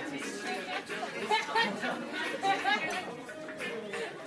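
Voices chatting over background music.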